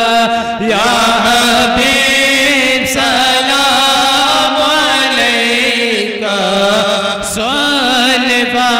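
Men's voices chanting a devotional Urdu kalam together, amplified through microphones, on long held notes that glide slowly up and down.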